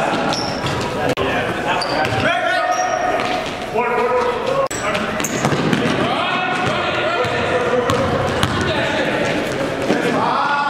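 Live sound of an indoor basketball game: a ball being dribbled on a hardwood gym floor and players' voices calling out, echoing in the hall, with a few short high sneaker squeaks in the first few seconds.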